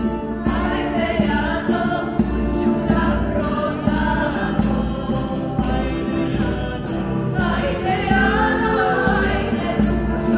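A small vocal group sings a Serbian folk song in harmony, with regular beats on a goblet-shaped hand drum under the voices.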